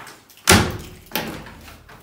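Louvered wooden wardrobe doors being handled: a sharp knock about half a second in, then a softer knock just after a second.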